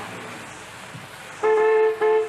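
A vehicle horn sounds once near the end: one steady, flat-pitched tone lasting just under a second.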